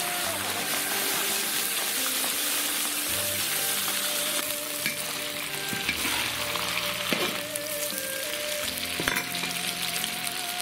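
Pork ribs and fatty pork sizzling in hot oil in a large iron wok, a steady frying hiss as the freshly added meat sears.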